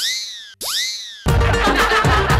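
Two cartoon-style comic sound effects, each a pitched whistle that shoots up and then slides slowly down. A little past halfway, loud dance music with a heavy beat comes in.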